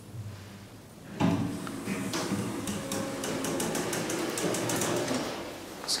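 Schindler Smart 002 elevator doors sliding open at the landing: a sudden mechanical start about a second in, then about four seconds of clattering door-operator running with rapid clicks, ending in a sharp click.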